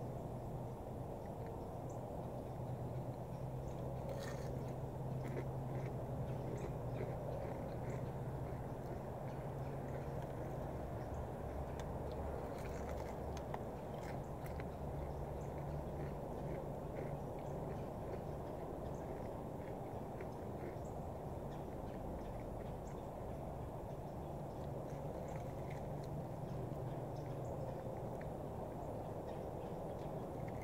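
Faint crunching and chewing of crispy fried chicken breading, heard as scattered small clicks, over a steady low outdoor hum.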